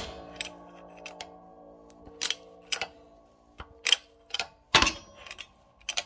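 A hydraulic shop press working to push a ball joint out of a car's lower suspension arm. It opens with a loud metal clang that rings on for a couple of seconds, then gives a run of sharp metallic clicks and knocks about half a second apart.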